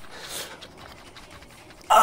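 A man breathing hard between strained grunts of effort while straining through a weighted sit-up. A loud 'ah' of effort starts right at the end.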